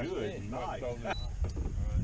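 Men's voices talking indistinctly for about the first second, then a low rumble that builds through the second half.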